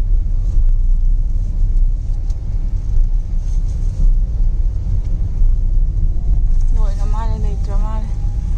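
Steady low rumble of a car's engine and tyres on the road, heard from inside the cabin while driving. A person's voice speaks briefly near the end.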